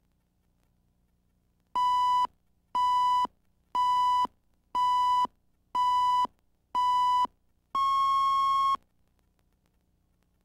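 Countdown beeps on a broadcast videotape leader: six short beeps about a second apart, then a longer, slightly higher beep lasting about a second.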